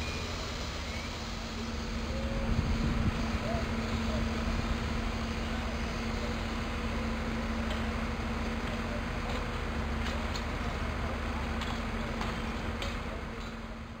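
Fire engine running at a fire scene: a steady low engine drone with a held hum over a broad hiss. The sound fades out at the end.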